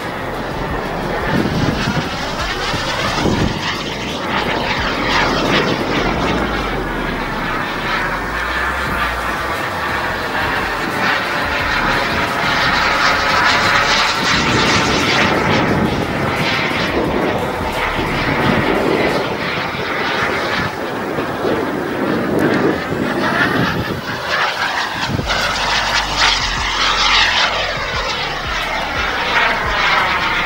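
Kingtech K140 model jet turbine of an F1 Fortune RC jet running in flight, swelling and easing in loudness as the jet passes and turns overhead, with a sweeping, phasing whoosh as it moves.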